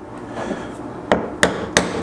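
Three sharp mallet strikes, in the second half and about a third of a second apart, on a metal eyelet setter held on a granite slab, setting an eyelet into leather with the wrong anvil and setter.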